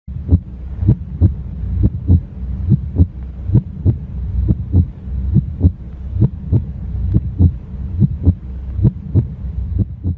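Heartbeat sound: a steady double beat, lub-dub, repeating a little faster than once a second, over a steady low hum.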